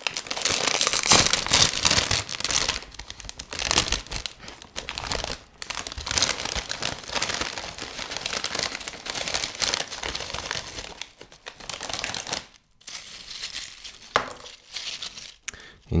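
A foil-lined Doritos chip bag being torn open and crinkled by hand, loudest in the first few seconds, then irregular crinkling as the open bag is handled.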